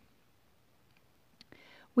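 A pause between spoken phrases: near silence, then a faint click and a short, soft breath in just before a woman starts speaking again.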